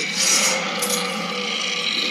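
A long, rough growl from a robot cartoon's soundtrack, played through a screen's speakers.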